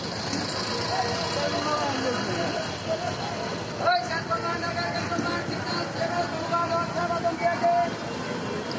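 Busy street sound: people talking over a steady din of traffic and engines, with one sharp click about four seconds in.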